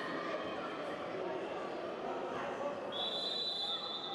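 Sports-hall ambience with faint, indistinct voices from around the hall, and a steady high-pitched tone that starts about three seconds in and holds.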